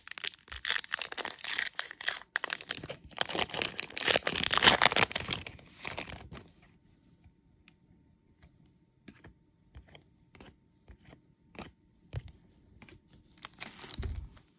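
A Topps Chrome baseball card pack's foil wrapper being torn open and crinkled, a dense crackling that lasts about six seconds. After that it goes quiet except for scattered light clicks as the cards are handled and flipped.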